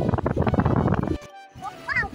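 Rumbling wind and road noise on a ride, cut off sharply just over a second in. After a brief silence, background music with a singing voice begins.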